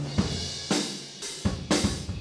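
Acoustic drum kit played loudly: about five hard hits on drums and cymbals, the cymbals ringing out and fading between strikes.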